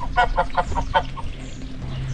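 Domestic goose honking a quick run of short calls, about six a second, which stops a little over a second in.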